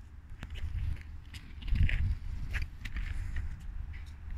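Small plastic wheels of a child's kick scooter rolling on a concrete skate ramp: a low rumble that grows louder about two seconds in, with a few faint clicks.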